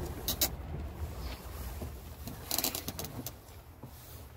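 Low steady rumble inside a truck cab that fades toward the end, with a few sharp clicks and rustles: a pair just after the start and a brighter cluster a little past halfway.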